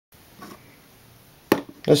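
A single sharp knock about one and a half seconds in, a hard object bumping against a tabletop, followed by a man beginning to speak.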